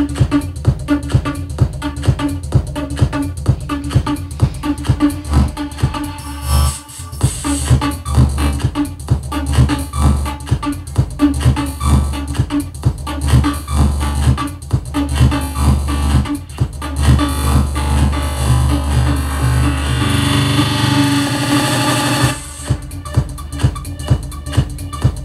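Electronic dance music played live from DJ CD decks through a mixer, with a steady kick drum at about two beats a second. The beat drops out briefly about seven seconds in, and near the end it gives way for about two seconds to a build-up of hiss before the kick comes back.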